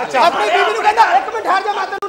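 Only speech: several voices talking at once.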